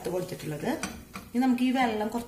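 Wooden spatula stirring and scraping vermicelli upma around a stainless steel pan, with short scrapes and knocks against the metal. A woman's voice comes in over about the last half second.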